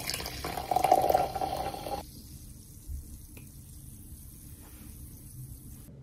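A canned drink poured into a glass: a steady stream that stops suddenly about two seconds in, followed by a faint hiss with a couple of light ticks.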